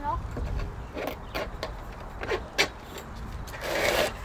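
Plastic cable ties and a sign being handled on a metal pole: a scattering of sharp separate clicks and a rustle near the end, over a low rumble.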